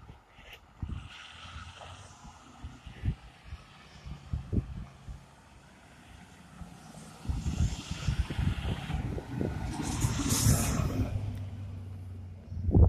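A truck drives past on the road, its engine and tyre noise building from about seven seconds in and loudest near ten seconds, with a low, steady engine hum as it goes by.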